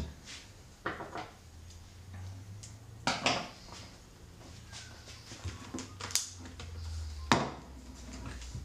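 A few sharp knocks and clatters as a cordless drill and a spool of fishing line are handled on a wooden workbench, with the loudest knock near the end, over a faint low hum.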